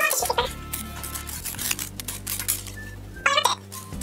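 Paper wrapping rustling with small clicks and taps as a compact is slid out of it, over soft instrumental background music.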